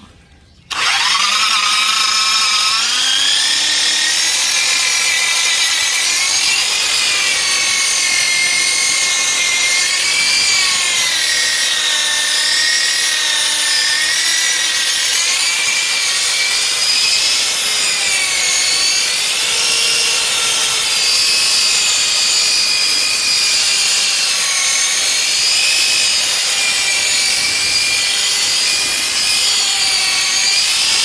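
Electric polisher switching on about a second in and spinning up, then running steadily against a ceramic floor tile, its whine wavering in pitch as it is worked over the surface. This is a finer number-two abrasive pass, meant to bring the scratched tile to a gloss.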